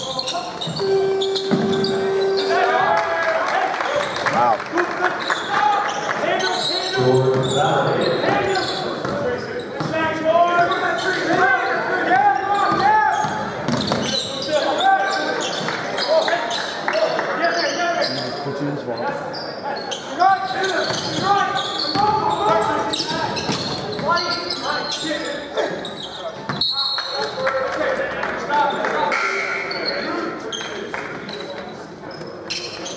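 A basketball bouncing on a hardwood gym floor during live play, under the voices of spectators chatting, all echoing in a large gymnasium.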